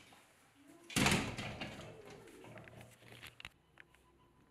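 Steel-framed glass door being pushed shut, closing with one loud bang about a second in that dies away with a short ringing tail.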